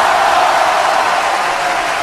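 A loud, steady rushing noise with no pitch.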